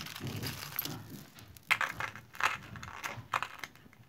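A heap of costume jewelry being rummaged through by hand: a rustle of shifting chains and beads, then several sharp metallic clinks as pieces knock together.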